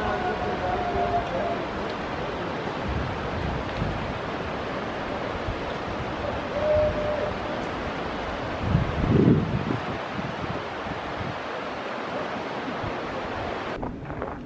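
Wind rushing over the microphone in a steady roar, gusting hardest about nine seconds in, with faint distant voices now and then.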